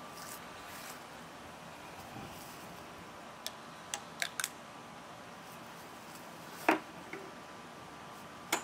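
Quiet handling sounds: a few small sharp clicks around the middle, then one louder snap near the end, from a rubber balloon being stretched and fitted over the end of a garden hose.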